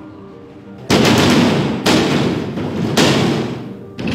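Someone pounding on a door: three loud, heavy bangs about a second apart, each echoing out before the next.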